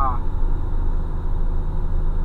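Heavy loaded truck's diesel engine droning steadily in the cab as it holds the truck on a downhill grade on the engine brake. A voice trails off at the very start.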